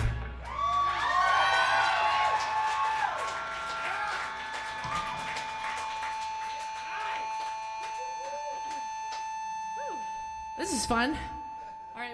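A live punk rock band's song ends as it starts, the band and cymbals ringing out. Voices whoop and call out over the tail, and a steady high tone hangs on from about four seconds in.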